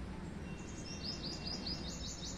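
A small bird calling in a fast, even run of short high chirps, about seven a second, starting about half a second in.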